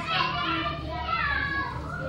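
Children's voices calling out and playing in the background, with a steady low hum underneath.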